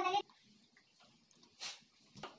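A girl's singing voice ends a devotional phrase right at the start, leaving quiet room tone with one brief faint hiss about one and a half seconds in.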